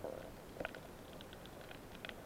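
Underwater ambience picked up by a submerged camera: a low muffled rumble with scattered faint clicks and crackles, and a couple of sharper clicks about two-thirds of a second in.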